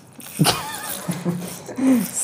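A high, wavering vocal cry about half a second in, followed by short, lower voice sounds.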